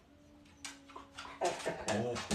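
A dog whining: one thin, level whine lasting about a second and a half, with a few faint clicks.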